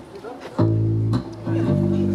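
Electric bass and electric guitar of a rock band playing the opening of a song without drums: two held notes, the first about half a second in, the second near the end.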